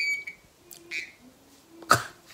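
Hearing aid feedback whistle: a high, steady squeal in two short bursts, at the start and again about a second in. This is the feedback the aid gives off when it shifts out of position on its fabric headband. A sharp click near the end.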